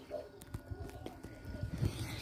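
Faint rustling and soft low thumps of a phone being handled and swung about, a little louder near the end.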